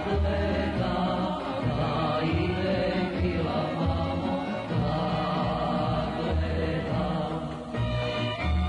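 A male vocalist singing a Serbian folk song in long held phrases over instrumental accompaniment.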